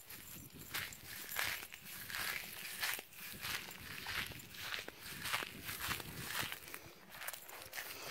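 Footsteps crunching on a gravel road at a walking pace, about two steps a second.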